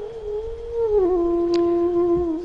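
A single long held musical note from the accompaniment, sliding down to a lower pitch about a second in.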